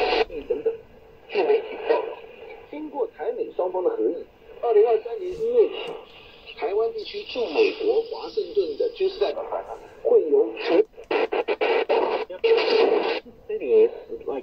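Shortwave broadcast voices from a TEF6686 DSP receiver's small built-in speaker, thin-sounding and with faint steady whistle tones, as the receiver is tuned between stations around 7.25–7.3 MHz. Brief gaps break the speech, and a run of quick crackles comes about ten to eleven seconds in.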